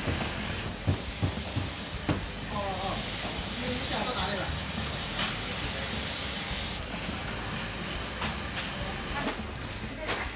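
Workroom ambience in a garment factory: a steady hiss with indistinct voices in the background and a few sharp knocks in the first couple of seconds.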